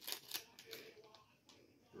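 Faint crinkles and small clicks of blind-bag packaging being opened by hand, dying away to near silence after about a second.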